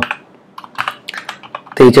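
Typing on a computer keyboard: a quick, uneven run of separate light keystrokes, quieter than the voice.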